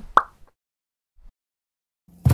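A single short pop sound effect from an animated logo intro, about a fifth of a second in.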